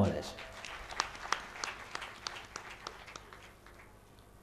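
Audience applause: scattered hand claps over a light haze, irregular and thinning out until they fade away near the end.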